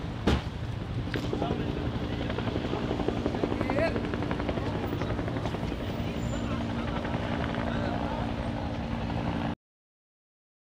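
A helicopter flying, a steady engine drone over a low rotor rumble, after a sharp knock right at the start. The sound cuts off suddenly near the end.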